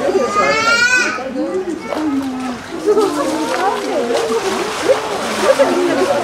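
Chatter of many visitors' voices, children among them, over water splashing from a polar bear swimming in its pool. A high, rising cry stands out in the first second.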